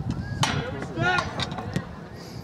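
Voices shouting across a soccer field over steady outdoor background noise, with a sharp knock about half a second in and a longer call about a second in.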